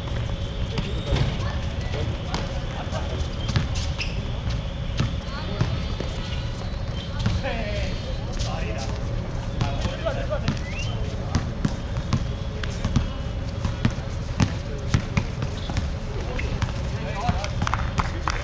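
A basketball bouncing on a hard outdoor court in irregular thuds, with players' scattered voices and calls. A steady faint hum runs underneath.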